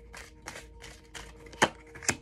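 A tarot deck being shuffled by hand: a run of soft card taps and flicks, with one sharper slap near the end.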